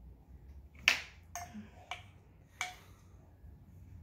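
A metal spoon clicking against a tabletop as it is dragged through a thin layer of wet cornstarch slime to write letters. Four sharp clicks, some with a short ring, the first about a second in and the loudest.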